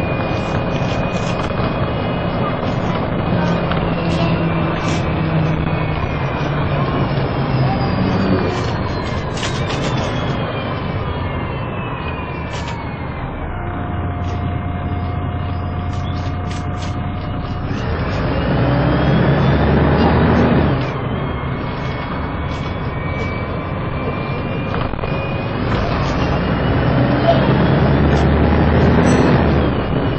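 MAN 18.220LF single-decker bus's six-cylinder diesel engine and automatic gearbox heard from on board, with a transmission whine that falls as the bus slows. The engine settles for a few seconds, then gets louder as the bus pulls away, and the whine climbs again.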